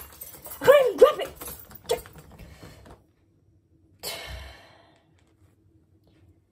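A person's voice making short strained grunts in the first second, as if heaving at something, with fainter effort sounds until about three seconds in. A brief breathy rush follows about four seconds in.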